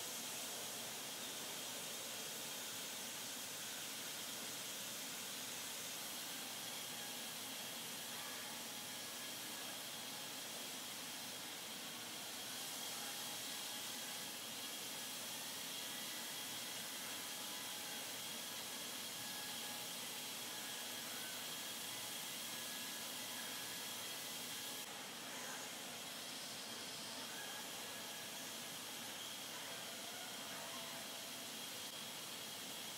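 Steady hiss of a car-body paint spray booth, with robotic spray guns atomising paint over moving air, and a faint steady high whine running through it.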